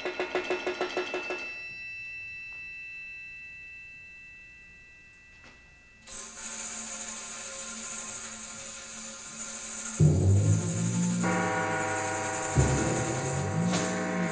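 Solo percussion music. A fast roll of strokes stops about a second and a half in and leaves high ringing tones that slowly die away. Near the middle a sustained high shimmer starts, like tambourine jingles, and it is joined in the last few seconds by loud low drum strokes.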